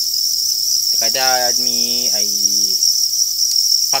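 A dense chorus of many farmed crickets chirping together: a continuous, high-pitched trill that never pauses.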